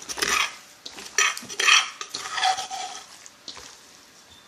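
Gloved hands mixing chopped raw chicken and giblets with pounded sticky rice in a stainless steel bowl: wet squishing of the meat and rubbing against the metal bowl, in several strokes that die away near the end.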